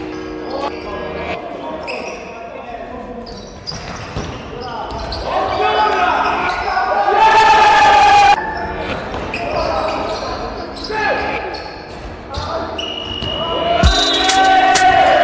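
A basketball bouncing on a wooden gym floor during play, with players' voices calling out, echoing in a large sports hall.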